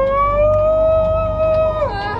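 A long, drawn-out high-pitched cry of "whoa", an exaggerated cry of fear. It rises slightly in pitch, is held for nearly two seconds and drops away near the end, over a low rumble.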